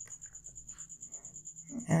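A steady, faint high-pitched electrical whine with a few faint clicks, then a man's voice starting a word near the end.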